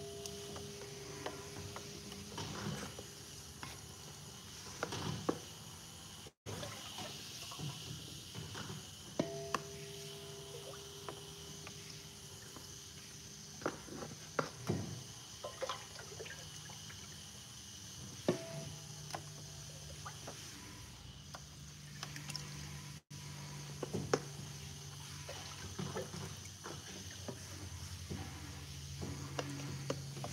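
Oil being scooped from a plastic bucket with plastic cups and poured into a stainless steel filler hopper. Scattered light knocks and clicks come from the scoops against the bucket and hopper.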